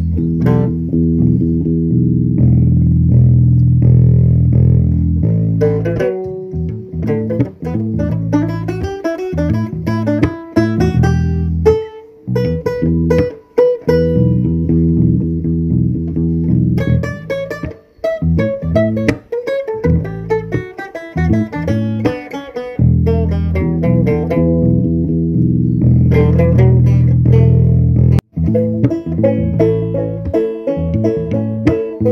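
Live-looped string band music: a repeating low bass line with banjo picking layered over it from about six seconds in.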